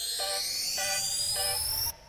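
Background music with the bass and drums dropped out: short repeated chords under a sweep that rises steadily in pitch, cutting off suddenly near the end.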